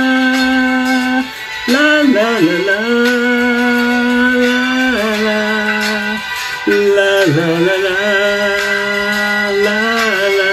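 A man singing a slow ballad on a wordless 'la la' line, holding long notes of a second or more each with brief breaks between them.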